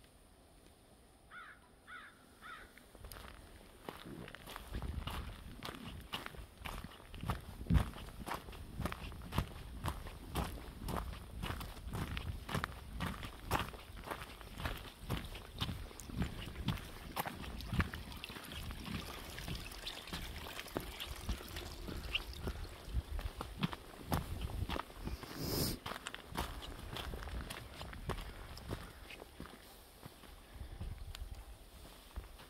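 Footsteps of a person walking at a steady pace on a frosty dirt and leaf-litter trail. They begin about four seconds in, with one sharper crunch near the end.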